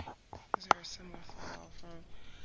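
Faint, low voices talking off-microphone over a call connection, with two sharp clicks about half a second in.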